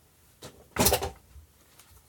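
A lamp holder is set down on a wooden workbench: a faint tap, then one short clunk just under a second in.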